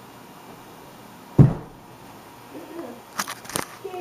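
A single heavy thump about a second and a half in: a person landing a backflip on a carpeted floor.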